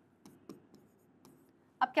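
Faint, short taps and scratches of a pen writing a few quick strokes on a digital board. A woman's voice starts speaking near the end.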